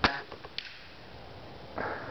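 A single shot from a Ruger Airhawk break-barrel spring-piston air rifle firing a .177 pellet: one sharp crack, followed by a fainter click about half a second later.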